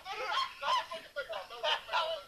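Two young men laughing hard, in a run of short pitched bursts of laughter.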